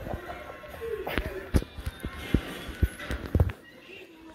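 Animated film soundtrack playing from a television: music with a run of sharp, low thumps about every half second that stop shortly before the end.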